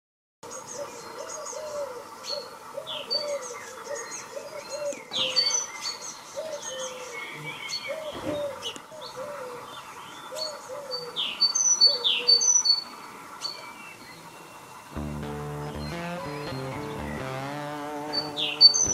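Several songbirds chirping and singing: quick high twitters over repeated lower whistled phrases. Near the end the birdsong gives way to music with steady low notes.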